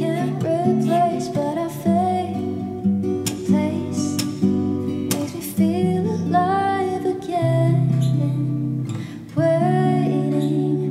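Acoustic guitar strummed and picked in a slow chord pattern, the chords changing every couple of seconds.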